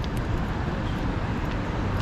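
Steady city street traffic noise: cars driving along the road close by, a low, even rumble.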